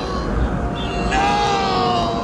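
A man's long anguished scream of "No!", held and slowly falling in pitch, drawn out again in a second long cry about a second in, over a low rumble.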